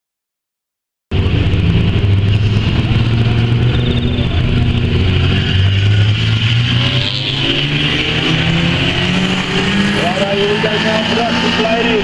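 Silent for about the first second, then production saloon race cars' engines running steadily as they lap a dirt speedway, the engine note climbing gradually in the last few seconds. A race commentator's voice comes in near the end.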